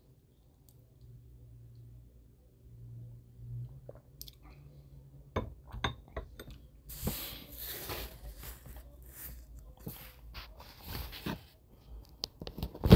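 Faint close handling noise from hands working small hobby items: scattered light clicks, becoming a denser crackling rustle from about seven seconds in.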